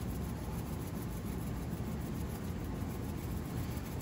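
Steady low rumble with a faint hiss, even throughout, with no distinct knocks or sizzles standing out.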